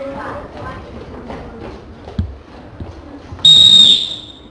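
A short, sharp whistle blast near the end: one steady high note, the loudest sound here, over faint voices and a single knock a couple of seconds in.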